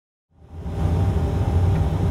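Steady low rumble of the PC-12 NG flight simulator's cockpit noise. It comes in from silence about a third of a second in and is at full level within half a second.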